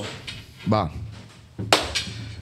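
A man says one short word in a small room, then a short, sharp hissing burst near the end, over a low steady hum.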